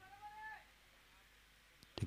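Near silence, broken only by a faint, short pitched sound in the first half second.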